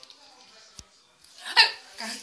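A faint click, then a short, loud, high-pitched vocal squeak or yelp about a second and a half in.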